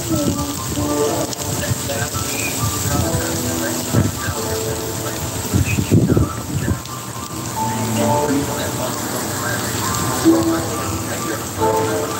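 Sausage links, sausage patties and hot dogs sizzling on a griddle, a steady crackling hiss, with a rap song playing over it.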